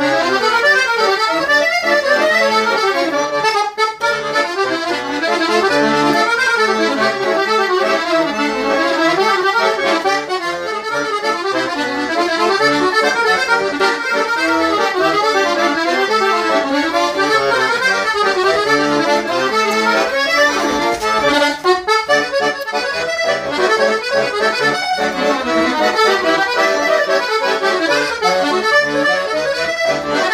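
Hohner Verdi II M piano accordion (96 bass) played solo, a quick-moving melody on the right-hand keyboard over left-hand bass, with two brief dips in the sound about four and twenty-two seconds in.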